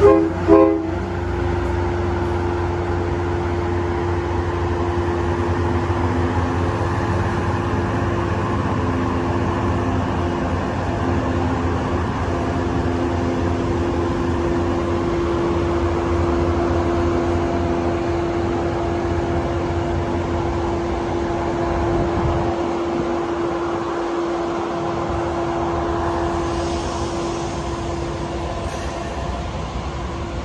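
Two quick blasts of a diesel commuter train's horn, the usual signal that it is about to move off, followed by the locomotive's steady engine hum and rumble as the train pulls out and slowly moves away.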